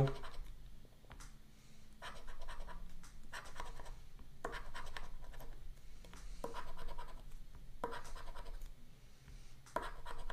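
Edge of a poker chip scraping the coating off a paper scratch-off lottery ticket, in several short bursts of strokes with brief pauses between them.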